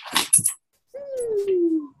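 A pet animal's single drawn-out cry, about a second long, falling steadily in pitch, after a brief noisy burst at the start.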